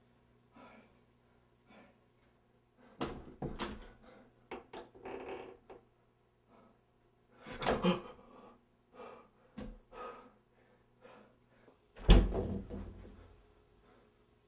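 Scattered knocks and thumps against a door in a small room, with sharp knocks about three and eight seconds in and a heavy bang about twelve seconds in, the loudest of them.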